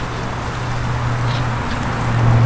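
Lowered Chevrolet Tahoe's V8 engine running as the SUV drives slowly away, a steady low hum with road and wind noise.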